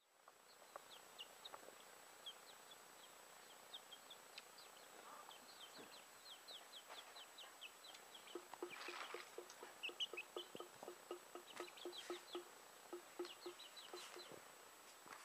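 Faint chirping of birds throughout, many short falling peeps, joined from about eight seconds in by a quick run of low clucks, about three a second, typical of chickens.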